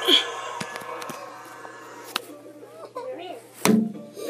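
Handling noise from a phone camera being knocked about: a few scattered knocks and a louder thump near the end, with faint voices in the background.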